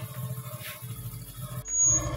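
Motorcycle engine idling with a steady low pulsing hum. A short, loud, high-pitched squeal comes near the end.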